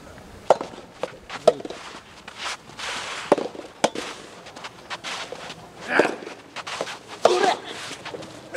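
A soft tennis rally: sharp pops of the soft rubber ball off rackets and the court, several spaced through the few seconds, with players' shouts about six and seven seconds in.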